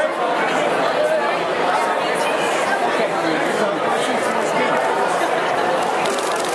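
Indistinct chatter of many people talking over one another in a steady hubbub, with faint short clicks in the high range.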